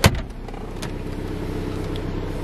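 A sharp latch click from the center console storage lid near the start, then the 2014 Dodge Dart's 2.4-litre four-cylinder engine idling steadily, heard from inside the cabin, with a couple of light clicks.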